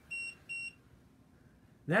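Two short, high-pitched electronic beeps about half a second apart, part of a beep that keeps repeating.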